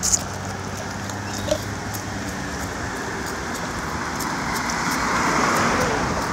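Street traffic noise: a steady low hum at first, then a car's tyre noise building louder toward the end. Faint scattered crunches of footsteps on dry leaves.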